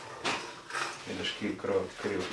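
An old hand brace and bit cranked by hand through a wooden bench top, the bit scraping and rasping as it cuts into the wood. A person's voice sounds briefly over it in the second half.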